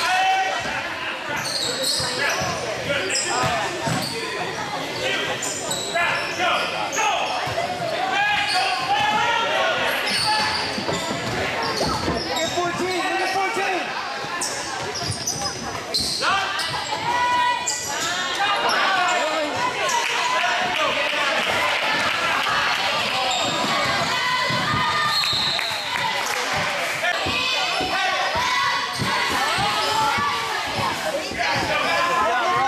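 Basketball dribbling and bouncing on a hardwood gym floor, with voices calling out throughout, echoing in a large gym.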